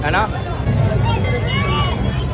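Crowd hubbub: many people talking at once, with a steady low rumble underneath and other voices rising and falling over it in the second half.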